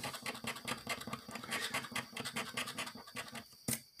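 A round plastic scratcher disc rubbed in quick back-and-forth strokes across a scratch-off lottery ticket, scraping off the coating. It stops briefly near the end, then gives one sharp tick.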